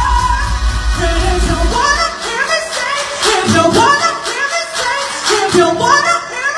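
Pop song sung live over a backing track. The heavy bass drops out about two seconds in, leaving the sung melody over a lighter beat.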